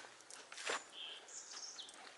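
Faint outdoor ambience with a few short, high bird chirps, and a soft click under a second in.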